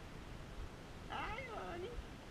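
A pet's short vocal call, like a meow or whine, about a second in, wavering in pitch and falling away at the end.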